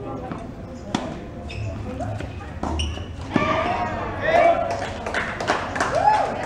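Tennis ball struck by a racket: sharp pops about a second in and again just past three seconds, with people's voices talking and calling courtside through the second half.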